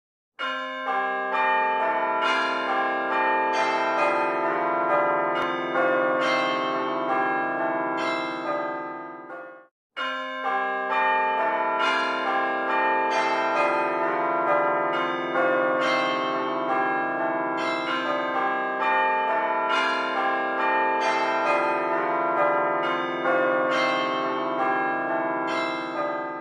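Bells ringing in a continuous, overlapping peal. The peal cuts off abruptly just under ten seconds in and starts again straight away.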